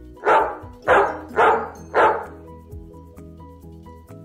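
A dog barking four times in quick succession, about half a second apart, over background music.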